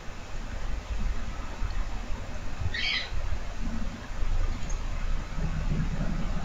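Steady low background rumble, with one short high-pitched chirp about three seconds in.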